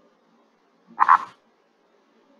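Male Indian purple frog calling: one short pulsed call about a second in.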